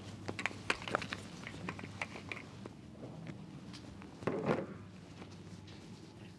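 Faint clicks and rattles of a rifle being handled with a magazine being brought to it, a few sharper clicks in the first second or so, and a soft rustle about four and a half seconds in. No shots are fired.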